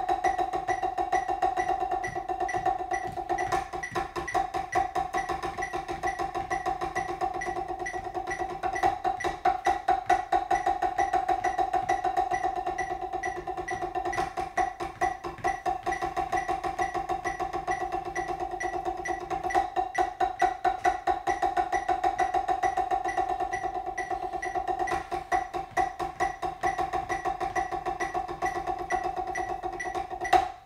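Drumsticks playing on a practice pad: a three-measure exercise of eighth notes, eighth-note triplets, then sixteenth notes with one hand, repeated with the other hand, to a metronome clicking quarter notes at 134. The strokes run in a steady stream that grows denser and louder roughly every ten seconds as each hand reaches the sixteenth notes.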